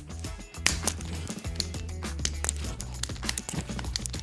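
Background music over irregular sharp clicks from a manual PEX expansion tool, its handles being squeezed to expand the end of a PEX pipe.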